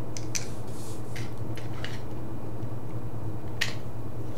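A few small, sharp clicks of pliers and plastic as wires are worked out of a telephone socket's IDC terminals, over a steady low hum.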